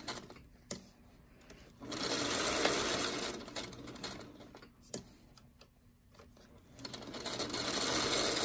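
Singer Featherweight sewing machine stitching in stops and starts. It runs for about two seconds, stops, and starts again near the end, with a single click in each pause.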